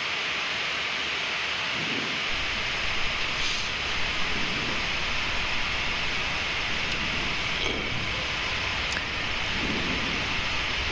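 Steady rushing noise of a Boeing 777-200ER in flight on approach, mostly a hiss, with a low rumble that joins in about two seconds in.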